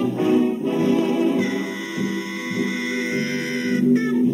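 Swing-era big-band jazz playing, with no singing yet. About a second and a half in, the band holds a sustained chord until near the end.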